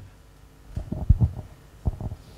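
A few dull low thumps from a handheld microphone being handled as it is lowered: a cluster about a second in and one more near the end.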